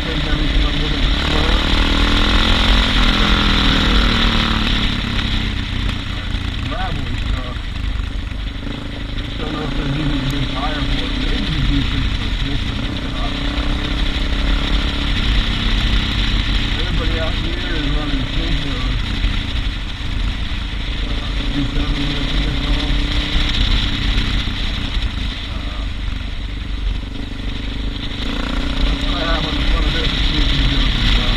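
Suzuki DR650 single-cylinder four-stroke engine running while riding, its pitch rising and falling as the revs change, with wind rushing over the camera microphone.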